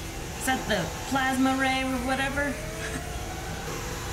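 Soundtrack of a televised superhero fight scene: a steady rushing noise under long, strained yells.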